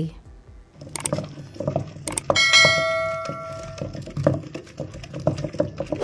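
Stone pestle pounding and grinding wet herb leaves in a stone mortar, making irregular dull knocks. About two seconds in, a bell-like ringing tone sounds and fades away over about a second and a half.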